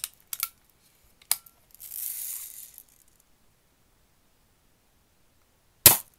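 Daisy Red Ryder BB gun carbine: a couple of light metallic clicks and a short rasp in the first three seconds, then, just before the end, a single loud sharp crack as it fires and the BB strikes the target trap a moment later.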